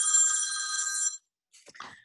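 A steady electronic ringing tone of several high pitches held together, lasting about a second and then cutting off suddenly.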